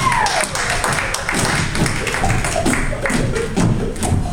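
Beatboxing through a stage microphone and PA: a hummed melody note slides down and stops just after the start, then a quick, steady beat of mouth-made kicks, clicks and snares.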